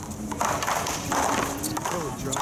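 Paddleball serve: a paddle striking a Big Blue rubber ball and the ball hitting the concrete wall, heard as a couple of short pops, with voices in the background.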